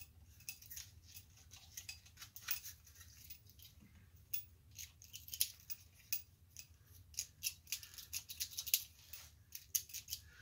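Irregular small metallic clicks and scratches of a pull-chain lamp socket being worked apart by hand. The ticks come several times a second, some louder than others.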